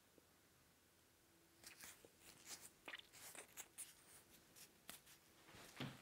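Near silence, with a few faint soft ticks and rustles between about two and four seconds in as a Somnifix mouth-tape strip is pressed onto pursed lips with the fingers.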